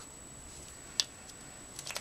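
One sharp plastic click about a second in, as a marker is capped and set aside, then a few faint ticks near the end as the markers are handled.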